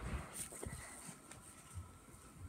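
Faint handling noise: a few soft clicks and low thumps, with light fabric rustle, as a phone is covered with a knit garment and adjusted.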